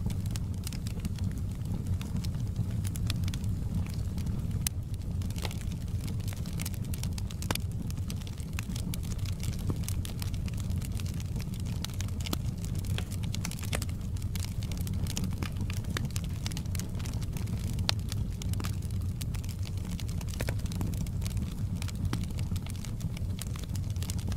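Wood fire crackling in a fireplace: irregular sharp pops and snaps over a steady low rumble from the burning logs.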